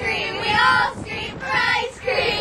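A group of young voices singing together, in two short phrases.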